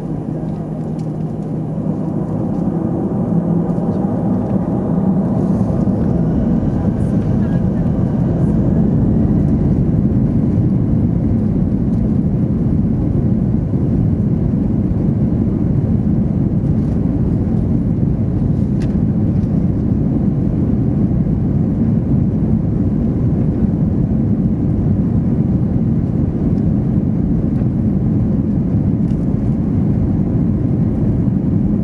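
Airbus A321's twin turbofan engines heard inside the cabin, spooling up over the first several seconds with a faint rising whine, then running loud and steady while the aircraft sits at the start of the runway for takeoff.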